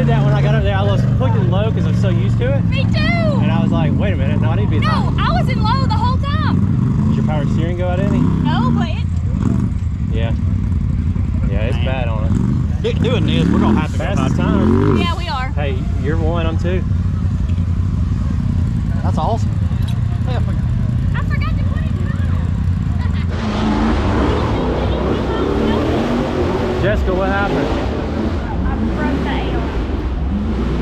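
Side-by-side (UTV) engine idling steadily under people talking. About 23 seconds in, a hissier, brighter noise joins it.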